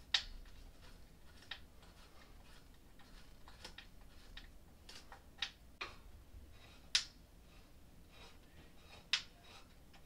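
Irregular small sharp clicks and clinks of metal hardware being worked by hand as a crib's wire mattress support is fastened to the frame, with a few louder clicks right at the start, about seven seconds in and about nine seconds in.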